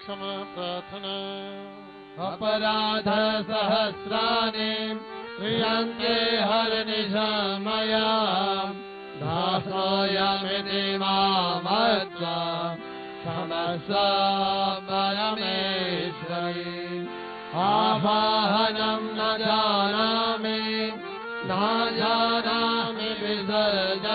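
Hindu devotional mantra chanting of an aarti, sung in phrases over a steady held drone, with short breaks between phrases.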